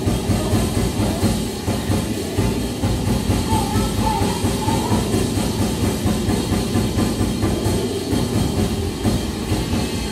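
Live band playing loud, dense music: an acoustic drum kit keeping a steady pulsing beat under synthesizers and electronics.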